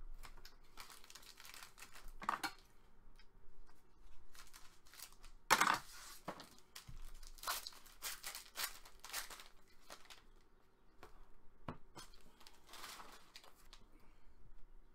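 A trading-card box is opened and its foil-wrapped pack is torn open and crinkled by hand, in irregular scratchy rustles. The loudest rip comes about five and a half seconds in.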